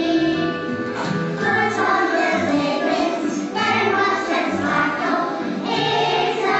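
A group of young children singing together over instrumental accompaniment with a steady bass line.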